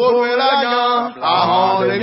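Voices chanting a song in a local language, with held notes. After a short break just past a second in, a fuller phrase with deeper voices joining comes in.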